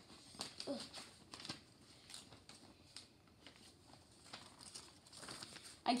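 Faint rustling of paper with scattered light ticks and taps as a greeting card and paper money are handled, the notes being pushed back into the card.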